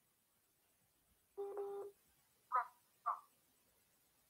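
Near silence broken by a short electronic beep of about half a second, then two much briefer pitched blips about a second later.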